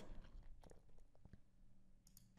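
Near silence: room tone with a few faint clicks in the first half.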